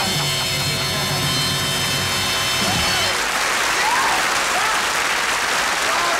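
A band holds the final chord of the song, which cuts off about three seconds in, and studio audience applause carries on alone after it.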